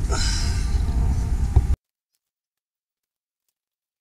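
A steady low rumble that cuts off abruptly under two seconds in, followed by dead silence.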